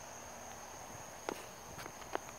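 Sneakers stepping across sawn tree stumps on dirt: faint footfalls, one clear tap a little over a second in and a lighter one near the end.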